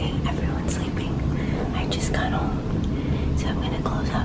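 A woman speaking in a low, breathy, whispery voice, hoarse from illness, over a steady low hum.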